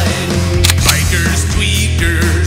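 Loud rock band music with bass and drums, including a couple of sharp drum hits near the middle.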